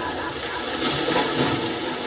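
High school marching band playing its competition show, brass and percussion together, heard from the stands as a loud, dense wash of sound with swells about a second in and again near the end.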